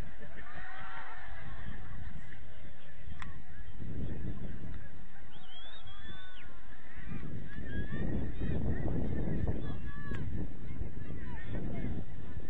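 Outdoor ambience: wind gusting on the microphone in rumbling stretches, with faint short calls scattered over it.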